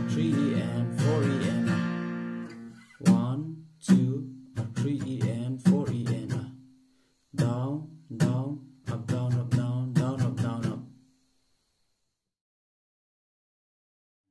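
Acoustic guitar strummed in a down-down-up-down-up-down-down-up-down-up rhythm pattern, the chords ringing between strokes, with a few short breaks; the strumming stops about three seconds before the end.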